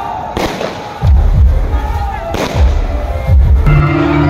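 Aerial fireworks exploding: sharp bangs about half a second in and again about two and a half seconds in, with a run of deep booms between and after them.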